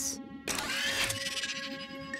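Cartoon mechanical whirring sound effect starting about half a second in, rising in pitch at first, as a robotic arm swings a hand mirror into place, over soft sustained background music.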